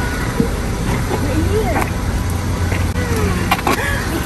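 A car idling with a steady low hum, faint voices talking over it, and a couple of sharp clicks near the end.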